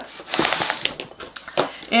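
Handling noise at a craft table: a fabric strip rustles as it is slid round on a cutting mat, with a run of quick small clicks from a snap-off craft knife.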